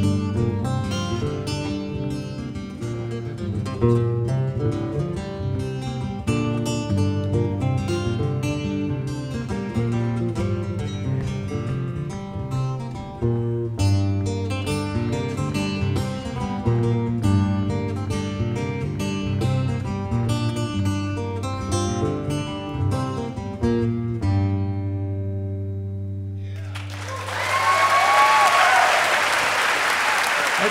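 Two acoustic guitars playing a Malian song as a duet, a steady bass pattern under quick plucked melody lines. Near the end the last chord rings out and fades, and audience applause breaks out.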